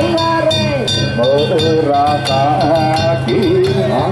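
A danjiri pulling song (hiki-uta) sung by one voice in long, wavering, ornamented notes, over a fast, steady clanging of the float's hand gongs.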